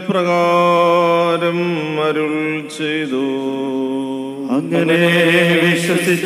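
A solo voice chanting a liturgical melody in long held notes that step down in pitch, with a short break about four and a half seconds in before the next phrase begins.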